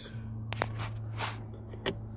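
A few light plastic clicks and a short rustle as a car's centre-console lid is worked open by hand, over a low steady hum.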